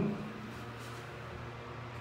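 Steady low hum inside a stationary elevator car, with no other events: the car's room tone.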